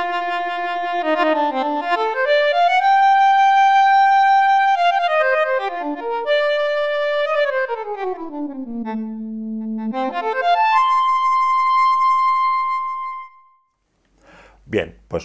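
Odisei Travel Sax, a 3D-printed electronic saxophone, playing its app's synthesized saxophone voice with the vibrato effect turned up. It plays a short legato phrase of held notes joined by smooth runs, climbing to a high note a few seconds in, sinking to a low note around ten seconds, and ending on a long high note that stops shortly before the end.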